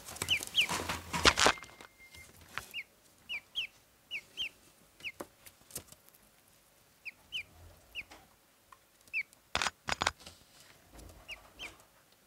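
Ducklings peeping: short, high calls that slide downward, singly or in pairs, scattered throughout. A cluster of sharp taps and knocks comes in the first second and a half, and another about ten seconds in.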